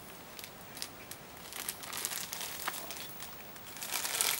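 Crinkling and rustling from hands working on antenna wiring, with scattered small clicks; it grows busier about a second and a half in.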